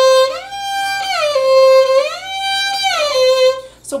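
Solo violin playing long held notes, sliding slowly and smoothly up to a higher note and back down twice: a left-hand shift up into fourth position and back, practised slow and smooth. The playing stops shortly before speech resumes.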